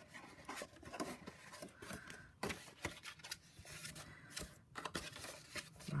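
Faint rustling and rubbing of stiff cardstock as hands fold it along its score lines and press the creases, with a few short sharp clicks, the loudest about two and a half seconds in.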